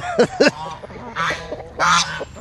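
Domestic geese honking and ducks quacking: several short calls in quick succession in the first half second, followed by a couple of brief rustling noises.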